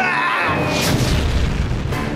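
Cartoon sound effects over background music: a yell, then about half a second in a deep boom and crash as a giant body lands on a metal robot and flattens it.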